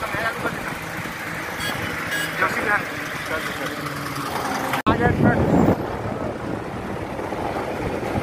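Highway traffic heard from inside a moving vehicle: engines running steadily, with indistinct voices over it. The sound cuts out for an instant about five seconds in, followed by a brief louder rumble.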